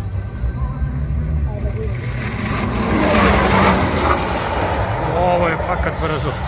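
A sports car passes at speed, a broad rush of noise that swells to a peak about three seconds in and then fades, over a low wind rumble on the microphone. Spectators' voices come in near the end.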